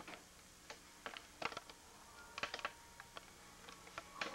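A few faint, irregular clicks and taps over quiet room tone with a faint steady hum.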